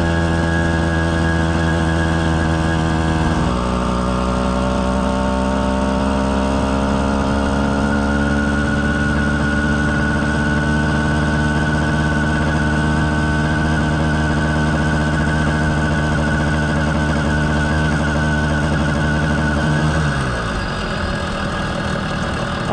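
Two-stroke motorized-bicycle engine running under way with a steady, buzzing note. A bit over three seconds in the pitch drops, then climbs slowly as the bike gathers speed, and it falls away near the end. It runs with only a few small misses and little four-stroking, a sign that the carburettor tune is close.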